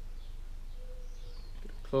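Quiet room tone with a low rumble and a faint steady hum that comes and goes, and a faint high chirp about a second in.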